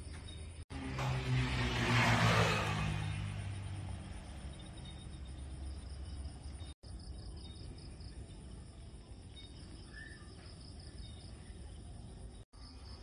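Crickets and other night insects chirping steadily. About a second in, a louder rushing swell with a low hum builds, peaks and fades over about three seconds. The sound drops out for an instant twice, at edits.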